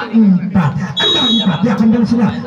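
A referee's whistle gives one short steady blast about a second in, the signal for the serve, over continuous talking.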